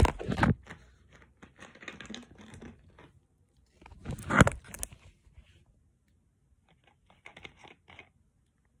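Handling noise of a smartphone that has fallen over and is being picked up and set back: irregular rubbing, rustling and knocking on its own microphone, with the loudest knock about four and a half seconds in and a few light clicks near the end.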